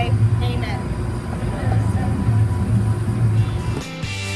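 A low, steady engine rumble with a few faint voices. Music starts suddenly near the end.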